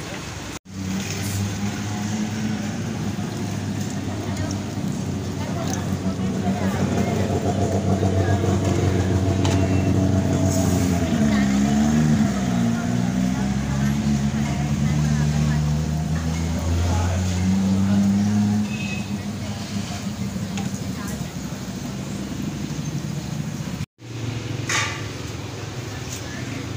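A vehicle engine running steadily, its pitch dipping and coming back up about halfway through, then stopping about three-quarters of the way in, over street traffic noise.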